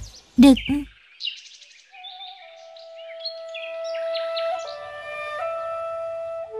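A single spoken word, then birds chirping in quick short notes from about a second in, while a flute melody of long held notes fades in underneath and grows louder, taking over near the end.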